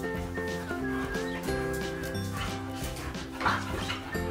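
Upbeat background music, with short dog vocal sounds from a border collie and a corgi play-fighting, the loudest one near the end.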